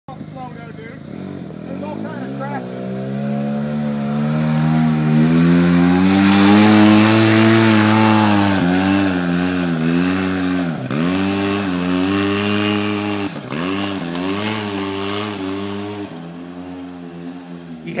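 Weber-turbocharged Polaris RZR4 side-by-side climbing a steep dirt hill under load. Its engine revs build over the first several seconds to a sustained high pitch, then dip sharply and come back three times, and it fades as the machine pulls away over the crest.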